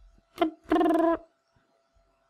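A man's voice making two short wordless sounds: a brief one with a quick drop in pitch, then a steady one held about half a second. A faint steady tone runs underneath.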